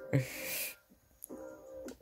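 A man's short breathy laugh near the start, over soft background music with steady held tones, and a small click about the middle.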